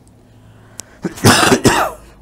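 A man coughing, two quick harsh coughs about a second in, louder than his speech.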